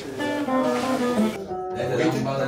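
Guitar music: a plucked guitar playing a quick run of notes.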